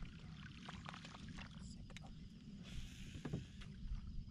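Faint small knocks and ticks of fishing gear and paddle against a plastic kayak hull, with a brief hiss about three seconds in, over a low steady rumble.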